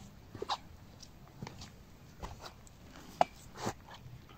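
A handful of short, sharp knocks and scrapes, about five in four seconds, the loudest a little after three seconds in: handling noises as a small fish is swung in on the line and landed.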